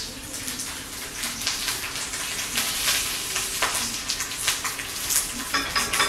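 A continuous hiss with many small crackles and pops, like sizzling.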